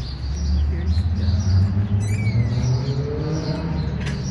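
Small birds chirping over a steady low rumble, with one short falling chirp about two seconds in.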